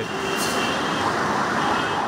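City road traffic noise, a steady wash of motorcycle and car engines and tyres, with a faint high tone, like a distant horn or siren, heard twice.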